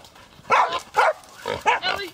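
A pig held by hunting dogs squealing in short, loud bursts, about four in quick succession.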